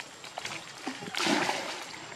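Water splashing as a young macaque swims and moves in a pool, with the loudest splash about a second in. Faint voices are in the background.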